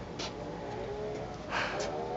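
A car engine on the road, low in level, its pitch climbing as it accelerates from about one and a half seconds in. A brief rush of noise comes at the same point.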